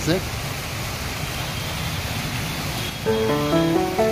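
Small decorative fountain jets splashing steadily into a shallow basin, then music with held notes comes in about three seconds in.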